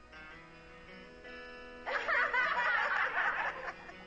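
Background music holding steady sustained notes. About two seconds in, a group of women laughs over it for nearly two seconds, then the laughter fades and the music carries on.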